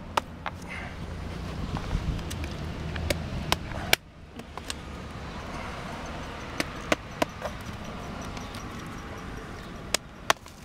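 Mallet striking a chisel held against a girdling tree root: about a dozen sharp, irregularly spaced knocks, the loudest about four seconds in, as the blade chops into the root to break its pressure on the trunk.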